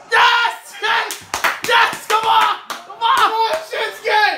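A few sharp hand claps, about a second in, among loud excited voices.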